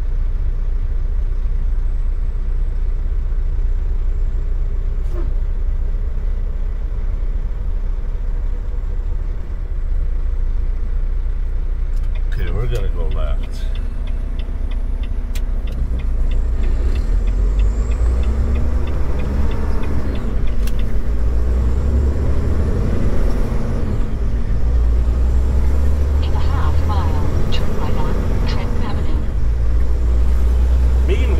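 Semi-truck's diesel engine running with road noise, heard from the cab, slow and steady at first, then louder in the second half as the truck pulls onto a wider road and picks up speed, the engine note rising and falling through gear changes. A short run of even ticks partway through.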